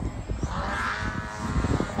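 Radio-controlled aerobatic plane's motor and propeller droning in flight, its tone swelling a little about halfway through as the throttle is worked to hold the plane in a slow, nose-high manoeuvre. Wind buffets the microphone.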